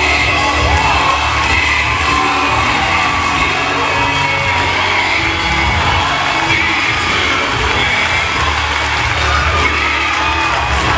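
Gospel music with singing, over a church congregation cheering and shouting.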